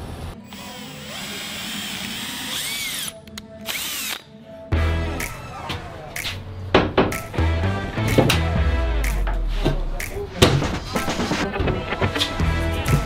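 Power drill running, its motor whine rising and falling, over background music with a beat.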